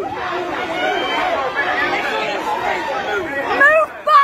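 A crowd of many people talking and calling out over one another, no single voice clear, with one louder voice near the end.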